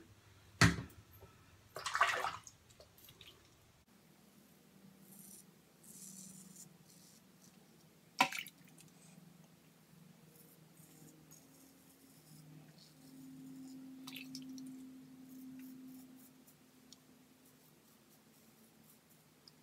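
Double-edge safety razor (Merkur 34C with a Polsilver blade) scraping through lathered stubble in short faint strokes, with a sharp click about a second in and again about eight seconds in, and a brief splash of water about two seconds in.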